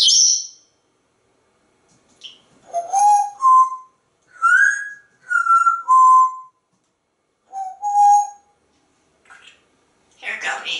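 African grey parrot whistling: a short shrill note at the start, then a string of about seven clear whistled notes, a couple sliding upward and a run in the middle stepping down in pitch.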